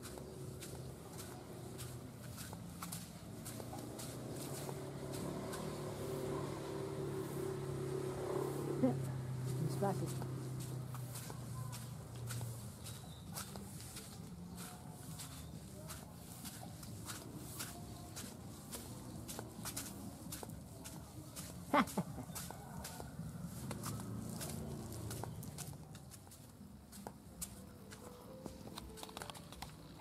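Faint, indistinct voices in the background, with scattered light ticks and clicks.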